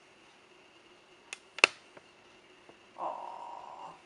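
Hands handling a reborn baby doll wrapped in a fleece blanket: two sharp clicks about a second and a half in, the second one loud, then a steady muffled sound in the last second.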